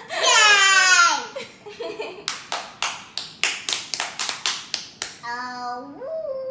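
A child's high voice exclaiming with a downward glide in pitch, then a quick run of hand claps, about four a second, for about three seconds. A short child's vocal sound comes near the end.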